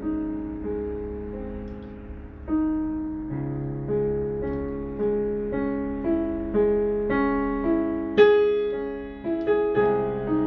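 Yamaha Clavinova digital piano played at an unhurried pace: single notes and chords over held bass notes, each new note struck about every half second to a second, with a louder chord about eight seconds in.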